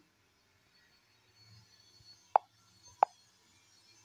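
Two short, sharp taps about 0.7 s apart, a fingertip tapping the phone's touchscreen, picked up by the phone's own microphone over faint room tone.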